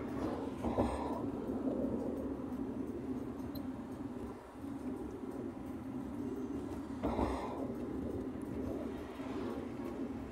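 Steady road noise of a car driving along, heard from inside the cabin, with two short louder whooshes about a second in and about seven seconds in.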